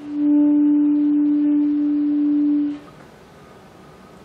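Selmer Action 3 alto saxophone holding one steady note for about two and a half seconds, a clear tone with only faint overtones, stopping cleanly. It is blown with steady breath and a little added mouth pressure, a demonstration of how pressure turns the airflow into tone.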